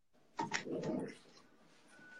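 A pet's short vocal sound, lasting just under a second, a little after the start.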